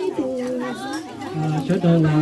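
A woman's voice singing Hmong kwv txhiaj sung poetry, holding long steady notes, with a lower voice holding a note in the second half. Chatter and children's voices run underneath.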